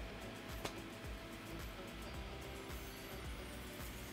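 Soft background music of steady held tones over a low pulse, with one brief click about two-thirds of a second in.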